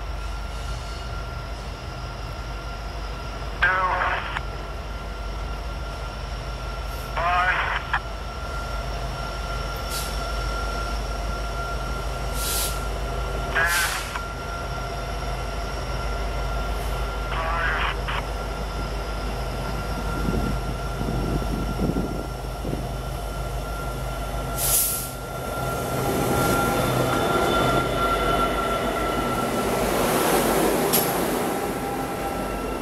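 Diesel locomotives of a Norfolk Southern freight train run with a steady low drone as the train approaches. The sound swells and widens into loud engine and wheel-on-rail noise as the locomotives pass close by near the end. A few short pitched calls stand out above the drone in the first half.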